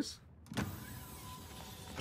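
A faint, steady hiss with a thin hum from the anime episode's soundtrack, starting about half a second in after a brief near-silence.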